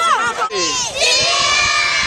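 A group of children shouting and cheering together. Their excited chatter changes about a second in into one long shout from many voices at once.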